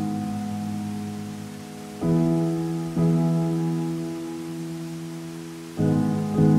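Slow, sustained solo piano chords, a new chord struck about two seconds in, another a second later and one more near the end, each ringing and fading, over a steady wash of rushing water.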